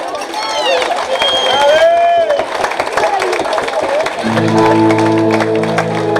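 Live acoustic band between songs: audience voices calling out over scattered clapping, then about four seconds in a sustained chord starts and holds.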